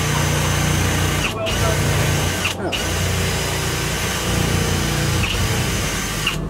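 Electric power drill running hard, drilling out a door lock, stopping briefly twice in the first few seconds before running on.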